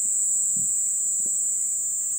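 Crickets chirping in a steady, high-pitched trill.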